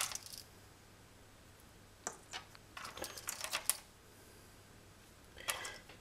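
Ceramic lamp sockets with wire leads clinking and clicking against each other and the table as they are handled, in short scattered bursts: one at the start, a few around two seconds in, a busier run about three seconds in, and one more near the end.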